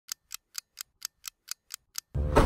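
A clock-ticking sound effect: nine short, even ticks, about four a second.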